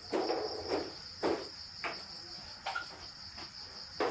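Crickets chirping as a steady high trill throughout, with a few short knocks and rustles from someone moving about in the first three seconds.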